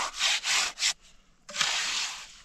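Steel hand trowel scraping and smoothing wet concrete mix. Four quick strokes come in the first second, then a pause, then a longer stroke from about halfway.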